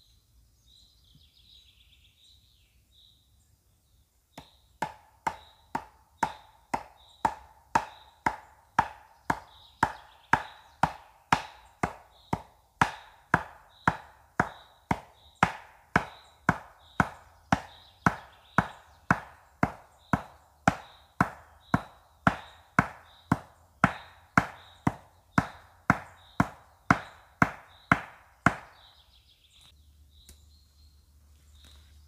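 Axe chopping at a standing pine tree: a steady run of sharp strikes, about one and a half a second, starting about four seconds in and stopping shortly before the end.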